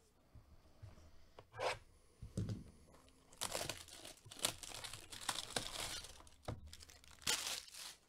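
Plastic shrink wrap being torn and peeled off a cardboard trading-card box, in a run of rips and crinkles. The longest tearing runs through the middle, with one last short rip near the end.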